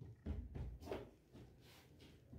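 Faint rustling and soft handling sounds of cotton fabric being smoothed and moved by hand on a cutting mat, in the first second or so.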